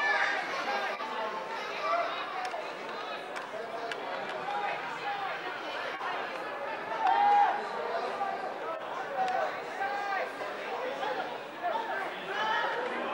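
Several voices talking and calling out at once, overlapping with no single clear speaker, with one louder shout about seven seconds in.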